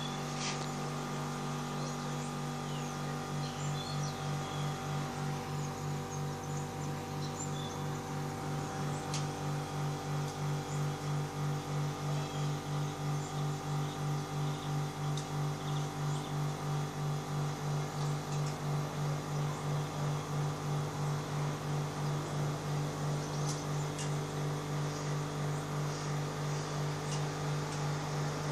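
A steady low hum made of several held tones, which starts to throb evenly about twice a second a few seconds in, with a few faint short high chirps above it.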